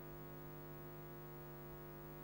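Steady electrical mains hum from a microphone and sound system: a low buzz with many evenly spaced overtones, holding level throughout.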